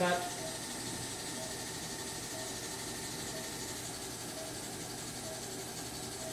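Steady, even hiss of operating-room equipment running during an Aquablation waterjet treatment, with faint voices in the background.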